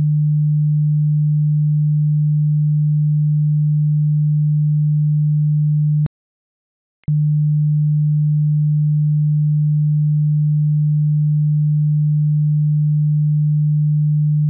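Steady 150 Hz sine test tone, a single low pure hum. It cuts out for about a second midway, with a click as it stops and again as it resumes.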